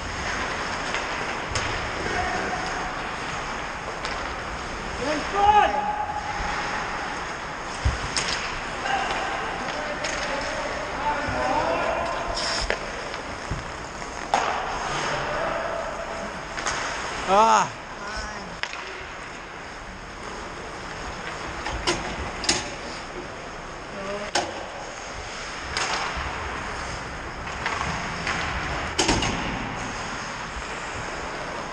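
Ice hockey game heard from the players' bench: a steady rink din broken by sharp cracks and thuds of sticks, puck and boards, with players' indistinct shouts, the loudest about five and seventeen seconds in.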